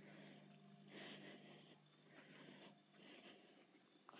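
Near silence, with a few faint soft rustles and a faint low hum that fades out near the end.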